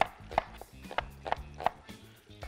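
Knife slicing a red onion on a wooden cutting board: about five sharp knocks of the blade on the board, unevenly spaced, over faint background music.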